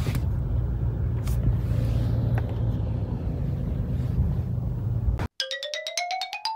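Steady low rumble of a car idling, heard inside the cabin. About five seconds in it cuts off abruptly and a fast run of xylophone-like notes starts, climbing steadily in pitch.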